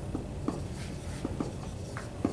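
Dry-erase marker writing on a whiteboard: a string of short, brief strokes and taps of the marker tip as the letters are formed.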